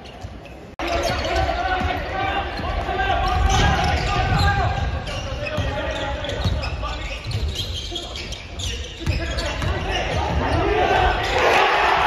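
Basketball game sounds in a gymnasium: a ball bouncing on the hardwood court with players and bench calling and shouting, echoing in the hall. The sound gets suddenly louder just under a second in.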